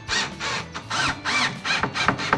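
Cordless drill driving a screw to fasten a height-adjustable desk's control box to its steel frame rail. It runs in a string of short bursts, about three a second, its pitch rising and falling with each burst.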